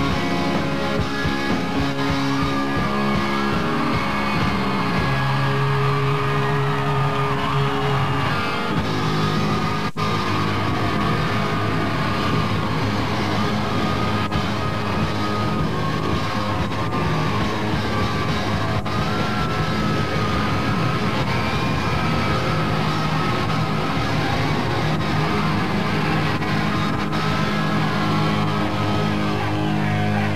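Live rock band playing loud and without a break: electric guitars, bass and drums, with long held, wavering high notes over the top.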